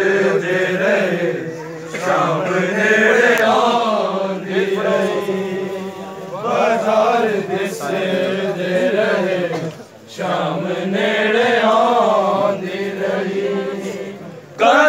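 Men's voices chanting a Punjabi noha, a Shia lament, in long swelling phrases of about four seconds each, with a short break about ten seconds in.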